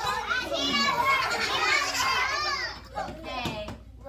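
A kindergarten class of young children all calling out at once, a dense high-pitched clamour of many voices that dies down about three seconds in.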